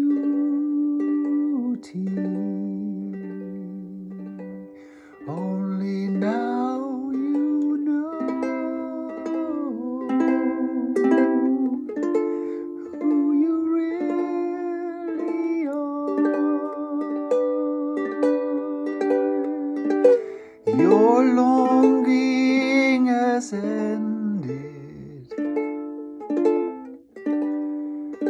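A man singing a slow song to his own plucked string accompaniment, with instrumental stretches between the sung phrases.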